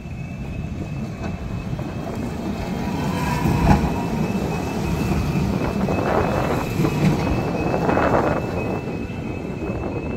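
Light rail tram passing close by on grass-covered track: its rolling noise and hum grow louder toward the middle and ease off as it moves away, with one sharp knock a little under four seconds in.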